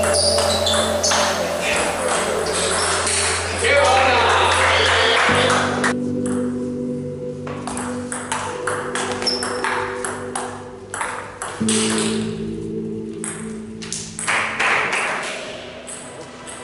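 Table tennis ball clicking quickly back and forth off bats and table in rallies, over background music with sustained notes.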